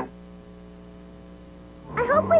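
Steady electrical mains hum, several low even tones, filling a silent gap between broadcast segments on an old tape recording.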